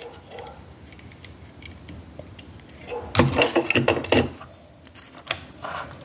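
Plastic LEGO bricks clicking and clattering as they are pressed together and handled, with a burst of louder clicks about three seconds in.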